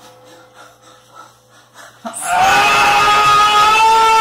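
Faint, quiet background music, then about halfway through a loud, long, high-pitched human scream that is held steadily and rises slightly in pitch.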